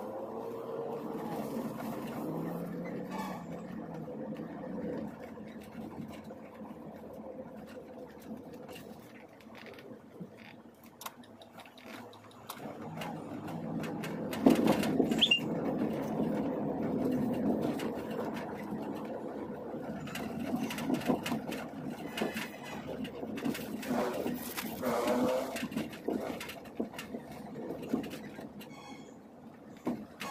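Car cabin noise while driving in city traffic: a steady engine and road rumble that rises and falls, with a sudden sharp thump about halfway through.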